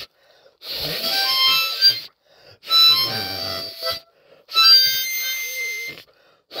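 Harmonica playing three short blues phrases, each about a second and a half long, separated by brief pauses.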